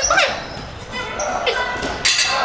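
A voice with no clear words, and a dull thud or two of a loaded curl barbell being set down on a gym floor.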